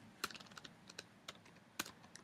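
Faint, scattered keystrokes on a computer keyboard as a misspelled word is deleted and retyped, with one clearer key press shortly after the start and another near the end.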